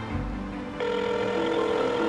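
Soft background music with a phone ringing tone laid over it; the ring starts a little under a second in and lasts about a second.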